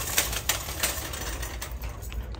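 Handbags handled on a metal display rack: a few sharp clicks and rustles from bag hardware and material in the first second, over a steady low hum.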